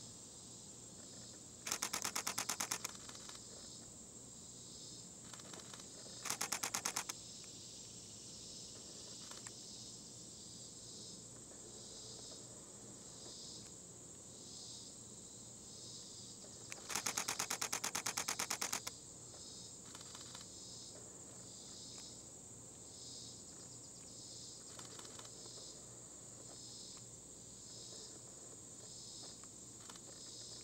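Camera shutters firing in rapid continuous bursts: a burst about two seconds in, a short one around six seconds, and a longer one of about two seconds past the middle. Under them runs a steady high insect chorus that pulses about once a second.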